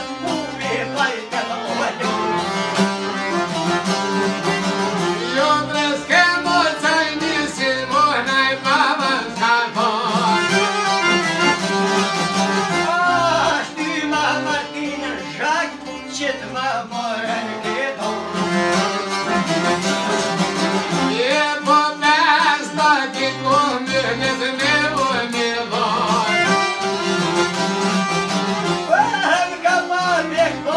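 Albanian folk ensemble playing live: plucked long-necked çifteli lutes and a bowl-backed lute, with an accordion and a bowed string instrument, while a man sings the melody over them.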